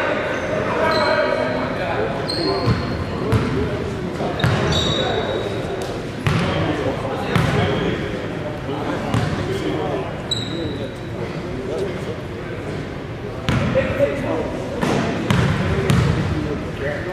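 Basketball game on a hardwood gym floor: the ball bouncing, a few short sneaker squeaks, and players' voices, all echoing in the large hall.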